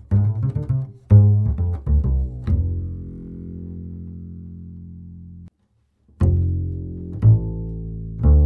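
Rubner double bass played pizzicato in a walking bass line on Galli BSN 900 synthetic strings: a run of quick plucked notes, then a final low note left ringing for about three seconds that cuts off abruptly. After a short silence, a new walking line on Pirastro Evah Pirazzi strings starts with plucked notes.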